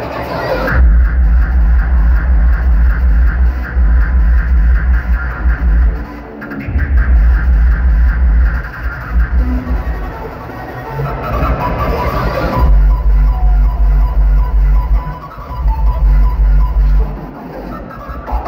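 Loud rawstyle hardstyle DJ set over a large venue sound system, driven by heavy, pounding kick drums. The kick drops out for a moment about six seconds in and again shortly before the end, and the track's sound changes around twelve seconds in.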